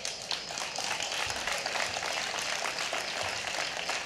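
Audience applause: many hands clapping in a dense, steady patter that starts just after the start.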